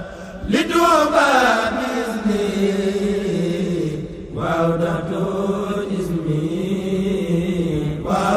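Voices chanting an Arabic xassida, a devotional poem in the Senegalese Mouride tradition, in long held melodic lines that slowly rise and fall in pitch. There are brief breath breaks right at the start and about four seconds in.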